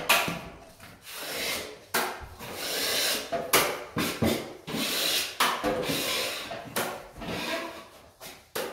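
A plasterer's hand tool rubbing and scraping along a plaster cornice at the ceiling line, in a run of separate strokes each about half a second to a second long.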